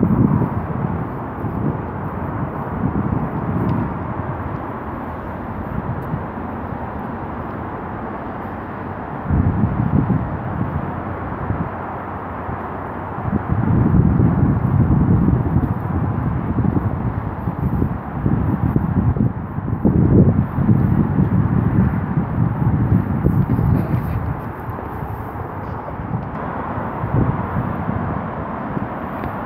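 Wind buffeting the microphone in irregular gusts, strongest through the middle stretch, over a steady wash of distant motorway traffic.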